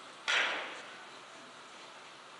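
A single sharp clack about a quarter second in, ringing away briefly, over quiet hall ambience.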